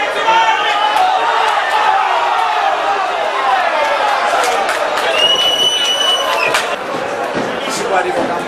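Men's voices talking over crowd chatter at a football match, with a single steady whistle blast of about a second and a half a little past midway: a referee's whistle stopping play.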